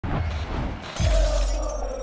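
Logo-intro sound effect of glass shattering, with a heavy deep-booming hit about a second in that then fades with thin high ringing tones, over music.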